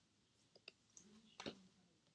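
Near silence broken by a few faint clicks as paper flash cards are handled and swapped, the clearest about a second and a half in.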